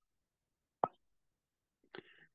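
Near silence over the call audio, broken by a single short click just under a second in.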